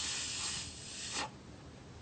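A man breathing hard into the mouth of a rigid black plastic plant pot: a breathy rush of air that stops suddenly a little over a second in.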